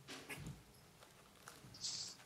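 Quiet meeting-room tone with a few faint knocks and soft thuds about half a second in, and a brief hiss near the end.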